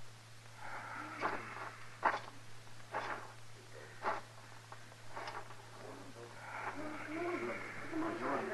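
Radio-drama sound effects: five sharp knocks about a second apart over a faint, indistinct background that thickens near the end.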